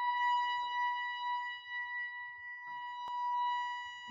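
Pipe organ holding a single high note, one steady tone with no other notes under it. A single sharp click sounds about three seconds in.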